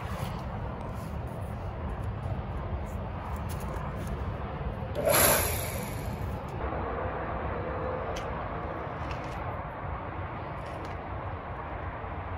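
Log splitter's electric motor and hydraulic pump running with a steady low hum, with a brief louder hiss about five seconds in.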